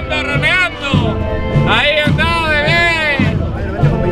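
A marching band of brass and wind instruments playing a slow processional march, a melody in swelling phrases over low drum beats.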